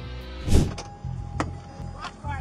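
A patrol car door being handled: a rushing thump about half a second in and a sharp click a little later, over quiet background music.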